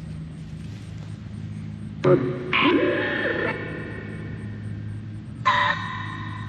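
Necrophonic ghost-box app played through a portable speaker: a steady low hum with two short bursts of garbled, voice-like fragments, one about two seconds in and one near the end.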